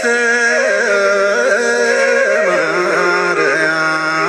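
A solo voice singing a slow Ethiopian Orthodox hymn (mezmur) in long, held notes that bend and waver, the melody stepping down about two seconds in.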